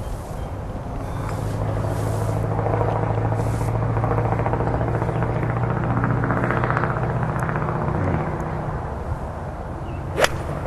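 A motor's steady low drone, swelling in level from about a second in and fading away near the end.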